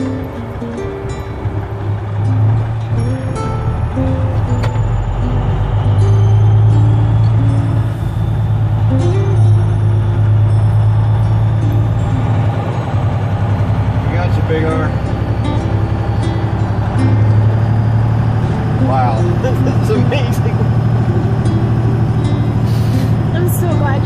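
Heavy truck engine droning steadily inside the cab as it drives, with music playing over it and a few words spoken in the second half.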